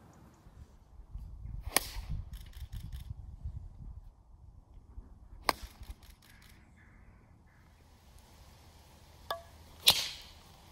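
Golf clubs striking balls off the tee: three sharp, sudden cracks, about two seconds in, near the middle, and the loudest right at the end, with a fainter click just before the last. Low wind rumble on the microphone between the first two.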